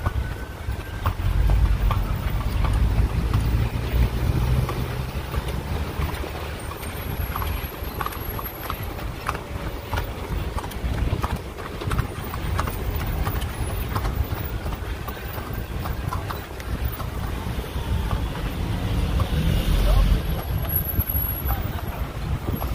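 A carriage horse's hooves clip-clopping on a paved street as the carriage rolls along, the clicks clearest in the middle, over a steady low rumble of traffic.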